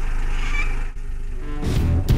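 A car engine idling steadily, then a sudden dip about a second in. Music begins about a second and a half in.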